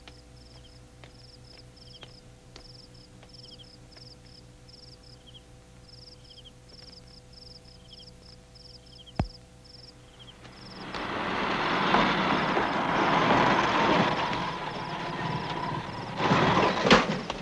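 Quiet night background with insects chirping in short repeated trills and one sharp knock about nine seconds in. About eleven seconds in, a loud vehicle engine noise rises and carries on to the end, fitting a jeep pulling up.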